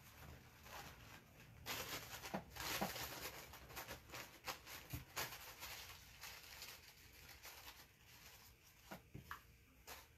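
Faint rustling and a few light taps from handling coffee-filter paper and craft materials on a work table, louder for a moment about two seconds in.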